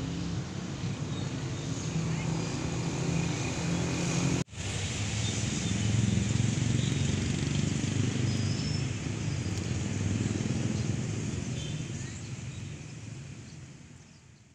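Outdoor ambience of indistinct voices and passing traffic, broken by a brief dropout about four and a half seconds in and fading out near the end.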